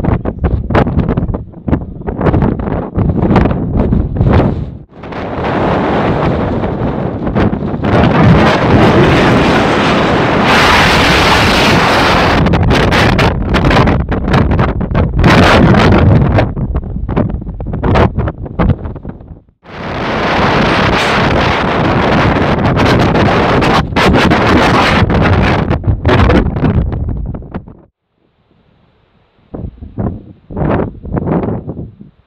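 Strong wind buffeting the camera microphone in loud, uneven gusts. It drops away briefly twice and stops near the end.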